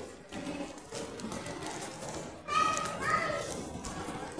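Background voices in a large echoing indoor hall. About two and a half seconds in comes a brief, high-pitched voice call, the loudest sound here.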